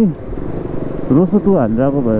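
KTM Duke 200's single-cylinder engine running steadily while riding slowly in traffic, heard clearly in a short pause about a second long before a man's voice talks over it again.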